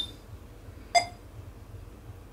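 Short electronic beeps from a Sony WX-920BT car stereo head unit as its power button is pressed to switch it off: a brief high beep right at the start and another short tone about a second in. Faint low hum beneath.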